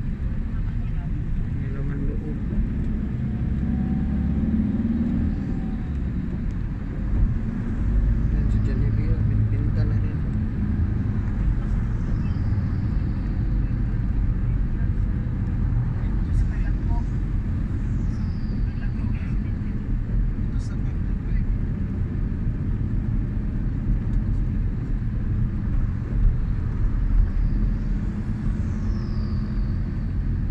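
Steady low engine and tyre rumble of a moving road vehicle, heard from inside as it drives along. A few brief high, falling whistles sound over it now and then.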